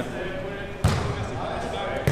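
A single sharp smack of a volleyball being hit, about a second in, with a short echo of a large hall.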